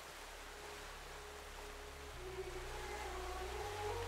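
Soft sustained-note background music fading in over a steady wash of water and small waves, its low chord changing about two seconds in and again near the end.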